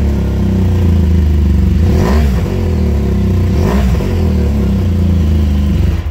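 BMW R1200GS Adventure's 1170 cc liquid-cooled boxer flat-twin idling just after a start-up, blipped twice, about two and four seconds in, with the revs rising and falling back each time. The sound cuts off suddenly near the end.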